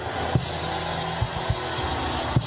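Church worship music with a few scattered drum hits over a steady low keyboard or bass chord, under a loud wash of noise from the congregation.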